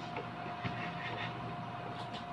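A faint steady single-pitch whine over background hiss, with a few light clicks from the panel buttons of a Roland EA7 arranger keyboard being pressed.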